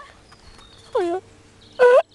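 A dog giving a short whine that falls steeply in pitch about a second in, then a louder, higher call just before the end.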